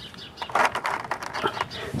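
Short, sharp plastic clicks and handling noise from fiddling with an action figure's small parts, starting about half a second in. Faint birds chirp in the background.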